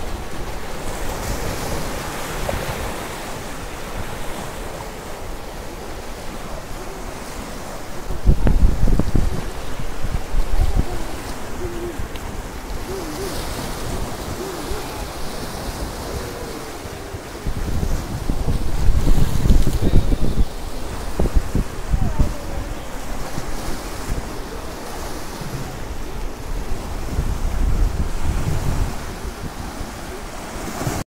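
Sea surf washing and breaking over shore rocks, with wind buffeting the microphone. Loud low rumbling surges come about 8 seconds in and again from about 17 to 21 seconds.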